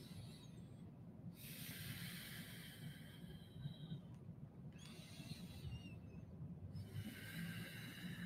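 A person breathing slowly and faintly: one long breath starting about a second in and lasting some three seconds, and another starting near the end.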